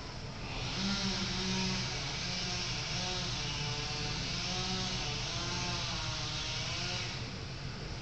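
A machine whirring with a strong hiss, starting about half a second in and cutting off about seven seconds in, its pitch slowly wavering up and down.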